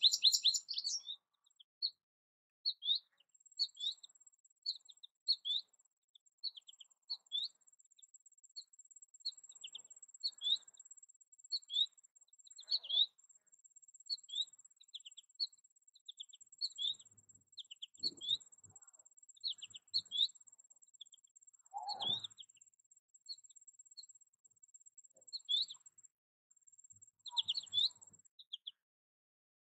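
American goldfinch calling: a run of short, high chirps, one or two a second, with brief pauses between them. A faint, thin, steady high whine runs behind the chirps for most of the time.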